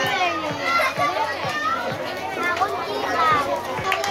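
Many young children's voices chattering and calling out at once, an excited crowd of children.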